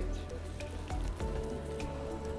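Faint Morse code tones played through laptop speakers, starting about a second in, over a low hiss.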